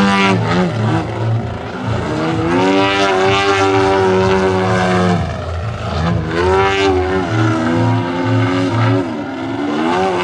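Engine and propeller of a large radio-controlled Extra 330SC aerobatic model plane in flight. The note rises and falls as the throttle is worked through the manoeuvres, dropping in pitch and loudness about a second and a half in, about five and a half seconds in, and near the end.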